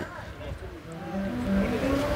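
Faint voices over a low rumble of background noise.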